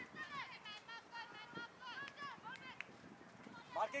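Faint, high-pitched voices of distant players calling and shouting, unintelligible. A nearer voice shouts loudly near the end.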